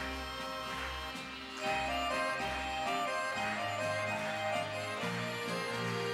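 Instrumental music: a melody of steady held notes over a bass line that moves from note to note, with no singing.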